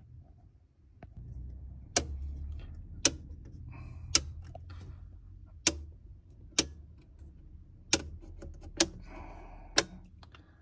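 MK miniature circuit breakers in a consumer unit switched off one after another, each toggle giving a sharp click, about nine clicks roughly a second apart. The circuits are being turned off in turn to find which ones carry the earth leakage.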